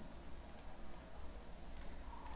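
A few faint computer mouse clicks as text is selected, a quick pair about half a second in and single clicks near one second and near the end, over a low steady hum.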